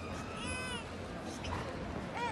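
A single short, high-pitched cry from a young child, rising and falling, about half a second in, over the low murmur of a crowd in an indoor arena.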